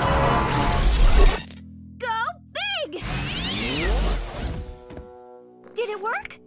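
Cartoon soundtrack: a loud crashing, shattering sound effect over music for about the first second and a half, then two short voice cries and a few sweeping sound effects.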